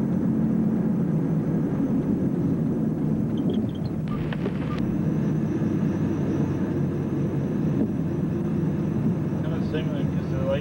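Car engine and road noise heard from inside the cabin while driving, a steady low rumble. It dips and breaks briefly a little under halfway through.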